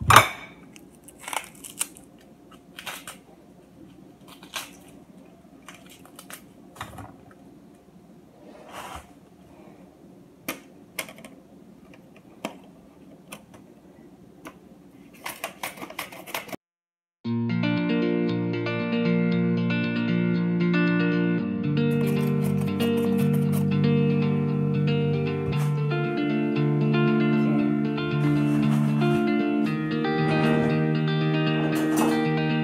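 Irregular clicks and light knocks of a knife slicing red onion. About halfway through the sound cuts out suddenly, and background guitar music, the loudest sound, takes over.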